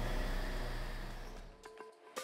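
Steady low rumble and hiss of machinery, fading out about a second and a half in. Faint music begins near the end.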